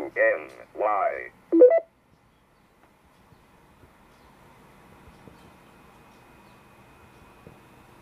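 A man's voice for the first two seconds, ending in a couple of short beeps, then faint steady hiss.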